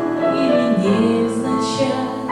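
A young woman singing a slow romance, accompanied on a digital piano.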